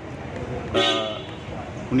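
A vehicle horn sounds one short toot, about half a second long, a little under a second in, over steady outdoor background noise.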